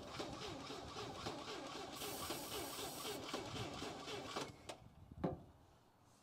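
International Scout 80's four-cylinder engine turned over by its starter motor in a steady rhythmic crank that stops after about four and a half seconds without catching; about two seconds in, an aerosol of brake cleaner hisses into the intake for about a second. A couple of clicks follow near the end. The engine has sat for years, and the owner is sure its ignition points are dirty.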